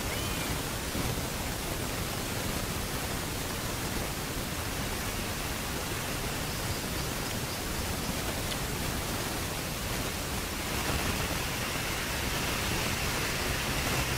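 Steady rushing noise with no distinct events; a faint higher hiss joins it about ten seconds in.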